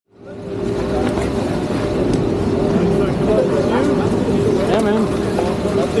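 Steady mechanical hum of a ski chairlift with a constant tone over a low rumble, fading in at the start, with people's voices talking in the background.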